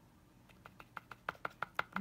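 A stiff paintbrush dabbing brown acrylic paint onto a polymer-clay broom handle, making a quick run of light taps, about eight a second, that grow louder after the first half second.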